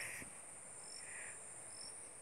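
Insects shrilling steadily at a high pitch, with short higher chirps repeating about once a second and two brief softer calls lower down.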